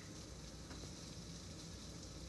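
A butter-and-flour roux sizzling faintly and steadily in a small saucepan on a gas burner, cooking as it starts to brown.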